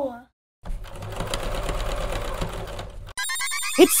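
Money sound effect: a rapid, steady mechanical whirr, like a banknote counter, for about two and a half seconds, then a sudden bright ringing just before a voice comes in.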